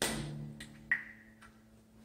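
Acoustic guitar strings struck once and left ringing down, followed by a few light clicks and one sharper click about a second in.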